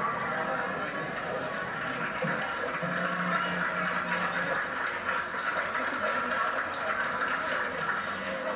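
Lion dance percussion (drum and clashing cymbals) playing continuously, dull and hissy as heard from an old videotape played through a television.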